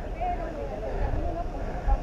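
Faint, distant voices over a steady low outdoor rumble.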